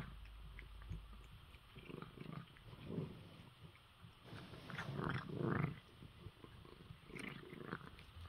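A cat chewing and crunching dry kibble, in irregular bursts with short pauses between mouthfuls.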